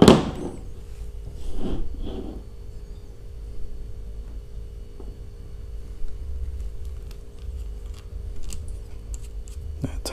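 Hands handling a small plastic multi-pin cable connector and wire, with a sharp click right at the start and scattered faint clicks and rustles after it, over a steady hum.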